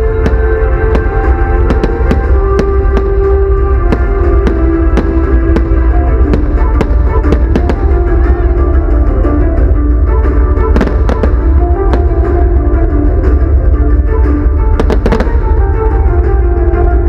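Music with long held notes plays loudly over a fireworks display. Firework bangs and crackles come all through it, with a cluster of sharp bangs about eleven seconds in and another near the end.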